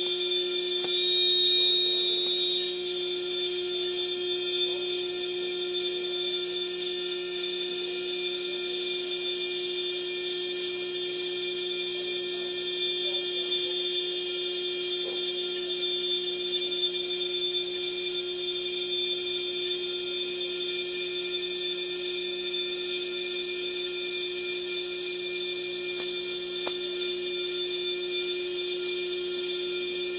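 Fire alarm sounding a continuous electronic tone, steady and unbroken, with no pulsing.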